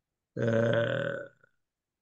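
Only speech: a man's drawn-out hesitation 'uh', held at a steady pitch for about a second, then silence.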